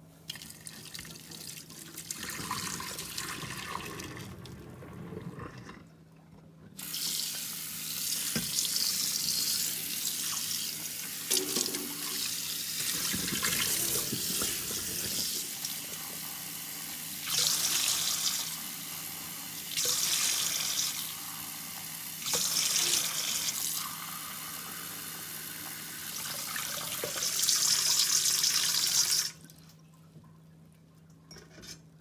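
Tap water running steadily into a stainless steel bowl in a steel kitchen sink, rinsing and filling it, with several louder stretches of splashing. The water cuts off near the end.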